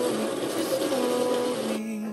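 Electric burr coffee grinder, a Baratza Encore, running steadily as it grinds coffee beans, stopping shortly before the end. Background music plays underneath.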